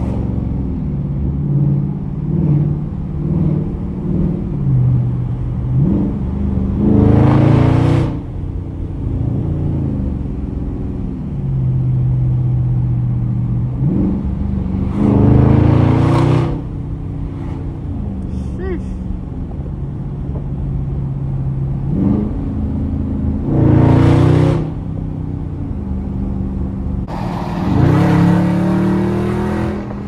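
Dodge Charger Scat Pack's 392 (6.4-litre) HEMI V8 heard from inside the cabin, running at a steady cruise and then opened up in four hard bursts of acceleration. Each burst lasts about two seconds, rises in pitch and cuts back sharply as the throttle lifts.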